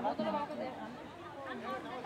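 Faint chatter of people's voices in the background, with no single voice standing out.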